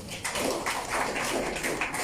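A roomful of people clapping, greeting a delegation member who has just been introduced by name: many overlapping claps with no steady rhythm.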